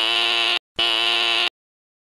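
Doorbell buzzer sounding twice, two steady buzzes under a second each with a short gap between them: someone is at the door.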